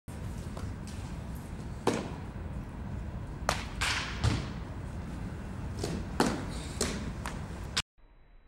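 Sharp, irregular smacks of baseballs hitting catchers' mitts, about eight of them, some in quick pairs, over a steady low rumble. The sound cuts off suddenly just before the end.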